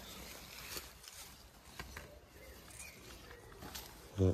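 Faint rustling of someone moving on foot through overgrown vegetation, with a few soft clicks scattered through it.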